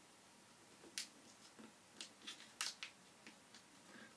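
Faint, crisp crackles of a sheet of origami paper being folded and creased by hand, a handful of short sharp ones scattered from about a second in.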